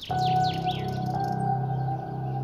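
A held chord of background music, with a few quick bird chirps in the first second.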